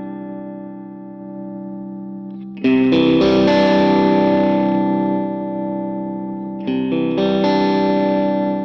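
Electric guitar played through a copy of a Fender 6G6-B blonde Bassman tube amp head. Chords are left to ring and die away, with a new chord struck about two and a half seconds in and again near the end.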